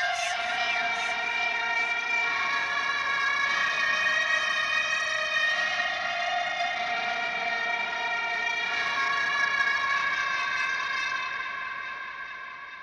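Sustained electronic synth chords with no drums or bass, the chord shifting every few seconds and fading out near the end: the outro of a dubstep track.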